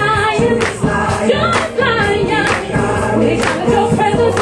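Gospel song: a choir singing over accompaniment with a steady beat.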